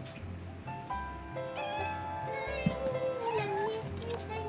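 Background music with a steady tune, over which a domestic cat meows once near the end, a drawn-out, wavering call that falls in pitch. A sharp click comes just before the meow.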